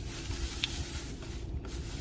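Rubbing and rustling as a shopping bag and its contents are handled, over a steady hiss, with a short click a little over half a second in.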